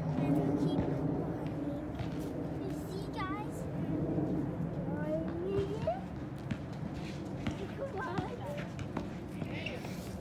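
Indistinct voices talking, with a few light knocks scattered through.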